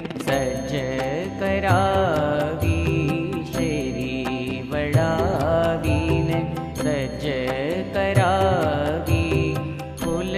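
Hindu devotional chant: a melodic voice singing in gliding phrases over sustained instrumental accompaniment and an even percussive beat.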